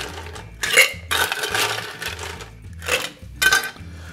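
Ice cubes clattering into a stainless steel cocktail shaker tin in several irregular bursts as the tin is filled.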